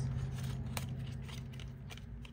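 Fingers handling a small paperboard cosmetics box, with light dry scraping and a few sharp clicks of the cardboard as its end flap is worked open.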